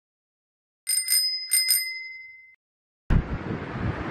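A small bell rung in two quick pairs, four dings in all, ringing on and fading over about a second. It comes over dead silence. Near the end, steady outdoor street noise cuts in suddenly.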